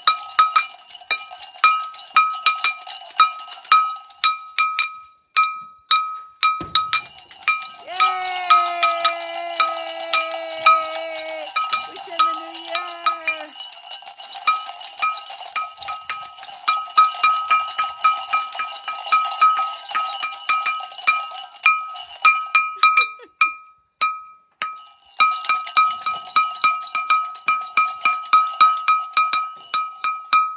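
A bell rung over and over in a steady rhythm, several strikes a second, with a couple of short breaks. About eight seconds in, a long held pitched note sounds over it for some five seconds and dips slightly in pitch.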